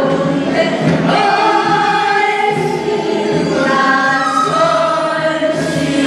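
A chorus of voices singing a Korean folk-style song together over a steady beat.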